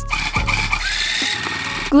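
Handheld electric tufting gun running, its needle rapidly punching yarn through the backing cloth, with a high whine that fades under a second in.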